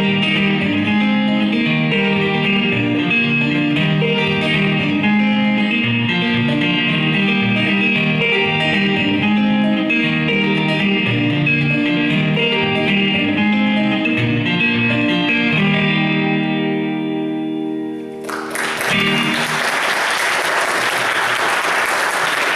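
Solo acoustic guitar playing a blues tune, ending on a held chord that rings out; a few seconds before the end the audience bursts into applause.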